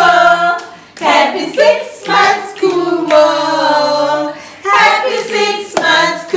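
A small group of women's and men's voices singing together, with long held notes and hands clapping along.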